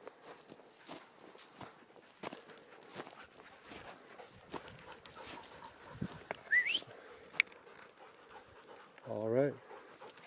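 Irregular crunching footsteps over dry twigs and forest litter as people and a dog move through deadfall. Past the middle there is a short high rising squeak and a sharp snap, and near the end a brief voice.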